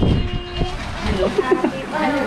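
Short bits of people's voices talking in a room, with low background noise.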